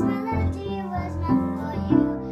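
A young girl singing a pop song over instrumental accompaniment.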